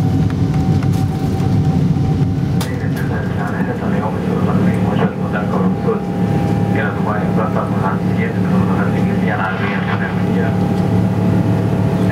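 Boeing 777-300ER's GE90 engines heard from inside the cabin during takeoff and climb: a loud, steady low rumble with a steady whine over it.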